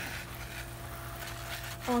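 Garden pump sprayer wand hissing faintly as it mists spray onto a potted plant, over a steady low hum.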